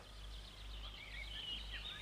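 Faint bird twittering: a run of quick, high chirps over a low hum.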